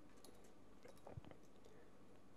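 Near silence: room tone, with a few faint small clicks and one soft knock about a second in, the sounds of hands handling line at a table.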